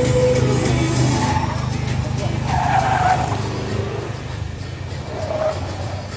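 Renault Twingo RS hatchback's four-cylinder engine running hard through a cone slalom, its tyres squealing in the turns: a longer squeal about two and a half seconds in and a shorter one near the end.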